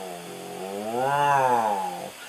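A man's voice imitating a phaser sweep: a sustained hum whose pitch slowly falls, then rises to a peak a little over a second in and falls again.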